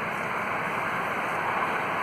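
Steady background noise of distant road traffic and wind in an outdoor field recording, played back after noise reduction, normalizing and compression. The background is still busy: the cleanup has not removed it.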